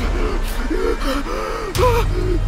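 A person gasping for breath, a rapid run of short, strained vocal gasps.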